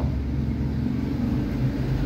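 Steady low mechanical hum of a running machine, several low pitches held level with no change.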